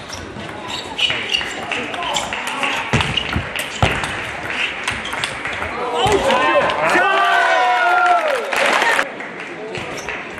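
Table tennis ball clicking off bats and the table at an irregular pace during a rally. About six seconds in, loud shouting with wavering pitch lasts about three seconds as the point is won.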